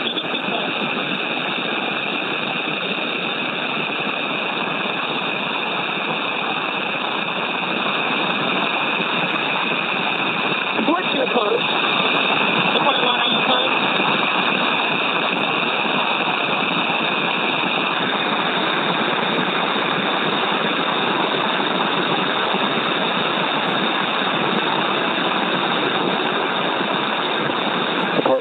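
Steady rushing hiss of air flowing through the SpaceX EVA suits, picked up by the suit microphones and heard over the crew's radio loop; its upper tone shifts slightly about two-thirds of the way through.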